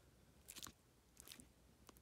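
Near silence, broken by a few faint clicks and crinkles of a paperback book being handled and turned over.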